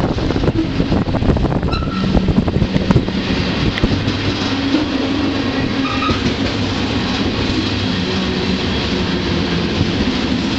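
Freight train running, heard from on board: a loud steady rumble of wheels on rail, thick with clicks and rattles. Brief faint high tones come twice, about two and six seconds in.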